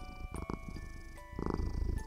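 Soft glockenspiel-style lullaby music with a low, fast-fluttering rumble laid over it, a sleep sound effect that swells twice, about half a second in and again near the end.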